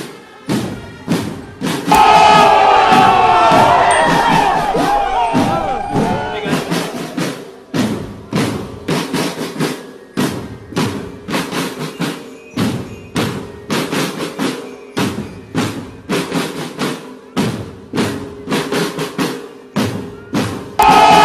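Marching drum line of a military drum band playing a steady, even marching beat on large slung drums. About two seconds in, a loud burst of higher, sliding sound joins the drums and fades out over the next several seconds.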